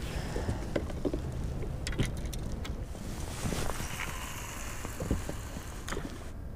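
Scattered light knocks and clicks of gear being handled in a small boat, over a steady low background of open-air noise.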